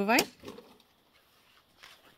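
A woman's voice ending a short sentence on a rising pitch, then near silence.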